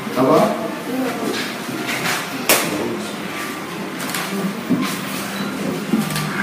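Indistinct voices in a room, not clear enough to make out, broken by a few short sharp knocks, the loudest about two and a half seconds in and a smaller one about four seconds in.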